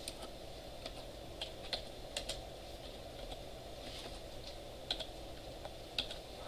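Typing on a computer keyboard: scattered, irregularly spaced keystrokes, fairly faint.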